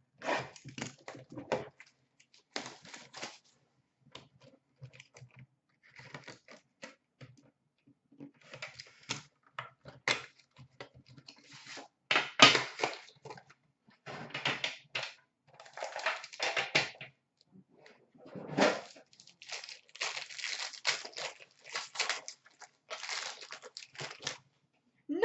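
Cardboard packaging of a 2017-18 Upper Deck Premier hockey card box being torn open and crumpled by hand, in irregular rustling and ripping bursts.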